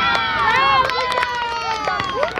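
Several voices break out together in long, high shouts of celebration just after a goal, overlapping and slowly falling in pitch.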